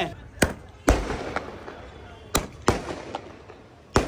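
A boxed multi-shot firework (cake) firing: about five sharp bangs at irregular intervals, the loudest about a second in, each trailing off into crackle and echo.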